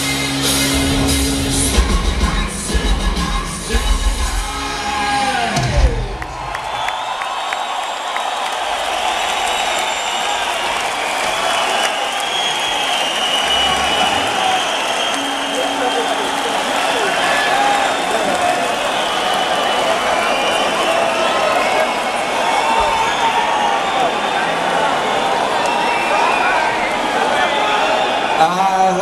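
A hard-rock band's closing chords and drum hits ring out for about six seconds and die away, then a large concert crowd cheers, whoops and shouts steadily for the rest of the time.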